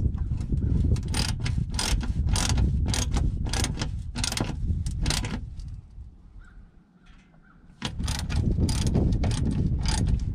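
Hand socket ratchet clicking in quick strokes, two to three clicks a second, as it runs bolts into a side-by-side's underbody access panel. The clicking stops for about two seconds past the middle and then starts again, over a steady low rumble.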